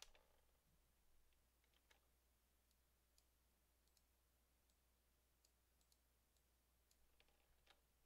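Near silence with a few faint, scattered clicks of a computer keyboard and mouse as code is selected, copied and pasted.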